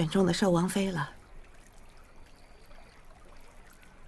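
A woman speaks one short line in Mandarin. After about a second she stops and only a faint, steady background hiss remains.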